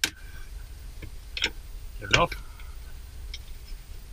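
Cutting pliers snipping through a plastic cable tie: one sharp click right at the start.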